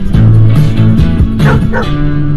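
Background music, with a Doberman giving two short high-pitched calls near the end.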